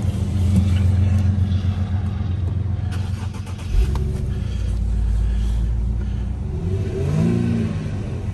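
2011 Infiniti G37x's 3.7-litre V6 engine running, restarted about halfway through with a sudden thump, then idling with a brief rise and fall in revs near the end.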